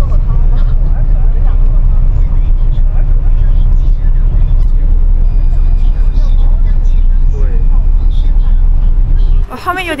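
Coach bus on the move, heard from inside the passenger cabin: a loud, steady low rumble of engine and road noise. It cuts off suddenly shortly before the end.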